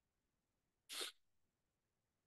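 Near silence, broken once about a second in by a single brief burst of noise.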